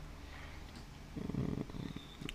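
A man's low, drawn-out hesitation sound "uh" about a second in, following a short pause with only a faint low hum.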